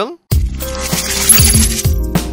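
Channel intro sting: a sudden whoosh with a bright tinkling sparkle, then electronic music with a regular drum beat starting about one and a half seconds in.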